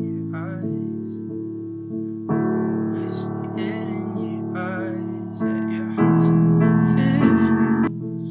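Piano chords played on a MIDI keyboard, each held for a second or two before the next, getting louder about six seconds in.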